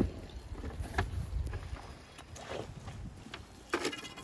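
Knocks and scrapes from a rusty metal ash bucket and long hand tools being handled on a gravelly canal bed: a sharp knock at the start, another about a second in, and scraping near the end, over a low wind rumble on the microphone.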